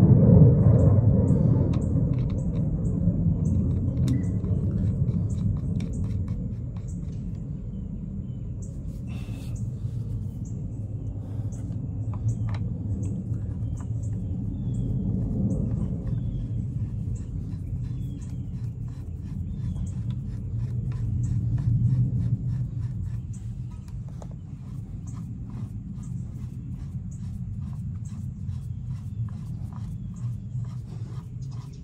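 A low, uneven rumble, loudest at the start and again about 22 seconds in. Over it come faint clicks and scrapes from hands threading a Banish 30 suppressor and its adapter onto a Ruger 17 HMR rifle barrel.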